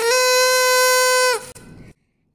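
Party horn blown once: one steady note held for about a second and a half, falling off at the end.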